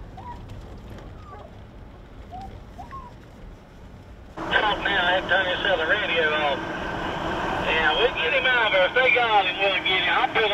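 Low, steady road and engine noise inside a pickup truck cab. A little over four seconds in, a loud, tinny transmission from the truck's CB radio cuts in suddenly, with wavering, overlapping sounds on it.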